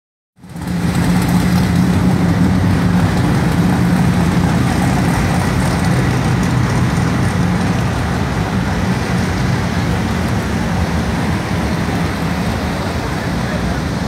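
Steady, loud motor-vehicle noise with a constant low hum, and indistinct voices mixed in.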